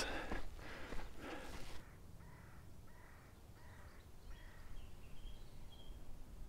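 A man breathing hard after climbing a steep sand dune, two heavy breaths in the first two seconds. Then, quieter, a bird calls four times about two-thirds of a second apart, with a few thin higher notes near the end.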